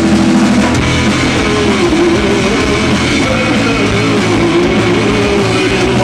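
Rock band playing live through amplifiers: electric guitar, bass guitar and a drum kit, loud and steady.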